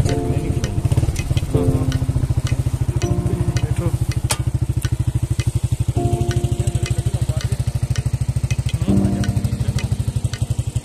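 Motorcycle engine running steadily with a rapid, even putter of about ten beats a second. Background music with held notes plays over it at intervals.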